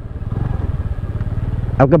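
A Honda scooter's small single-cylinder engine running steadily at low road speed, a low rapid pulsing beat.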